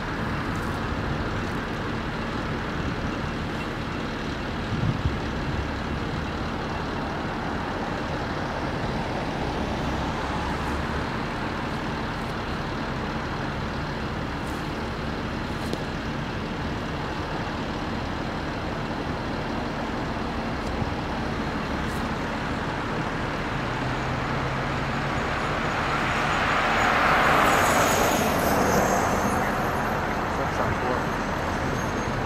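Road traffic: a steady hum of car tyres and engines, with one vehicle passing close near the end, swelling and fading away.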